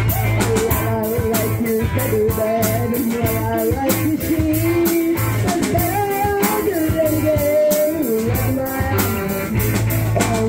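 Live rock band playing: electric guitars and bass over a drum kit keeping a steady beat, with a melody line bending above them.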